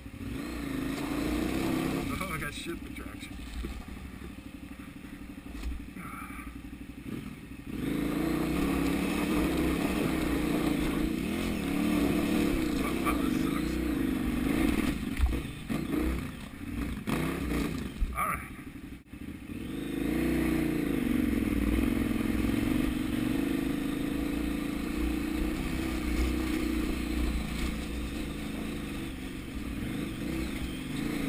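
KTM 990 Adventure's V-twin engine pulling at low revs over rocky ground, the revs rising and falling. Quieter for the first several seconds, then louder, with a brief drop about two-thirds of the way through.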